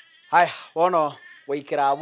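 A person's voice calling out three times in short exclamations with a wavering, sliding pitch and no clear words.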